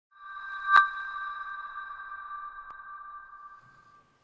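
A high ringing tone at two close pitches swells in, a sharp click sounds just under a second in, and the tone then slowly fades away over about three seconds.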